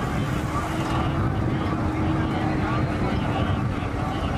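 Busy city street ambience: steady traffic noise from car engines mixed with a crowd of indistinct voices, with a steady low hum that holds for about three seconds.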